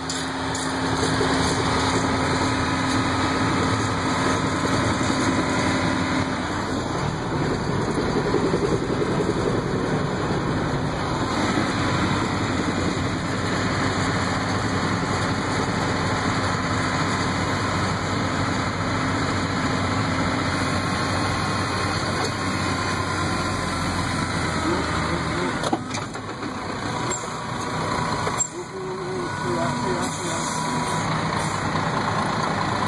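John Deere tractor's diesel engine running steadily under load, heard from inside the cab while it tows a stuck lorry on a chain through snow. The sound drops briefly a couple of times near the end.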